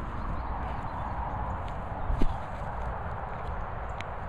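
Footsteps on grass, with a steady low rumble and one sharp knock about two seconds in.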